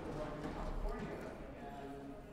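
Faint, indistinct voices, with a few light clicks like footsteps on a hard floor.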